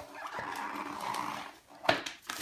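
A large cardboard gift box being shifted about on a wooden floor, with a sharp knock near the end as it drops flat onto the floor.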